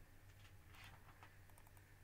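Near silence with a steady faint hum and a few faint, short computer mouse clicks, the first about half a second in and more around a second to a second and a half.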